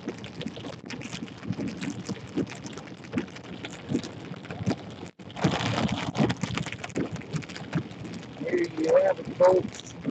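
Rain hitting a moving car's windshield and body, mixed with road and wind noise. The sound breaks off for a moment about five seconds in, then comes back louder for about a second.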